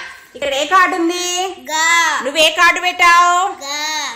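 Young children singing, with long held notes.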